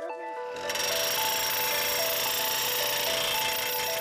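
Background music with sustained notes. From about half a second in, a loud, steady, rapid hammering noise from a percussive drilling rig boring into the ground.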